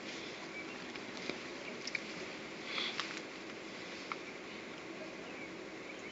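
Quiet room tone with a faint steady hiss, a few soft clicks and a short breathy sound, like a sniff, about three seconds in.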